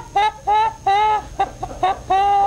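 Uncontrollable high-pitched laughter: a run of short squealing hoots, about three or four a second, each note held briefly at one pitch.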